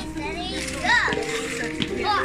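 A young child's excited voice and laughter over background music.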